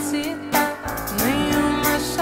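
Live acoustic pop band music: acoustic guitar accompanying a sustained, gliding melody line.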